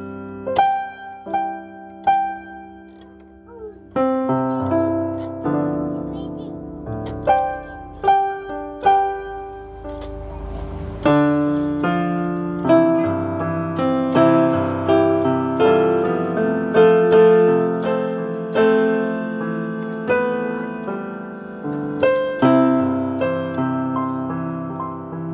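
Digital piano playing a slow hymn tune in chords. It starts with a few sparse notes, then moves into fuller, more sustained chord playing from a few seconds in.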